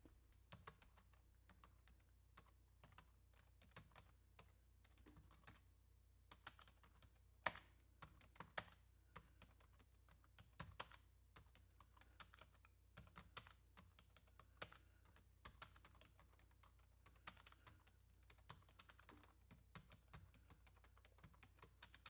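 Faint computer keyboard typing: scattered, irregular key clicks over near silence.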